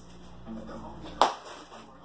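A single sharp knock a little over a second in: a flipped object landing back in its box.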